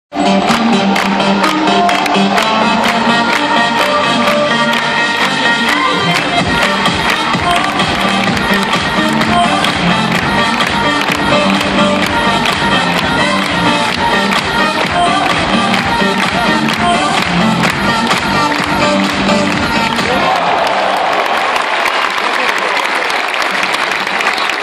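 Pop music played over an arena PA with a crowd clapping along in time. About twenty seconds in the music stops and the crowd breaks into cheering and applause.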